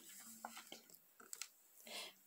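Near silence, with a few faint soft clicks from a page of a hardcover picture book being turned by hand.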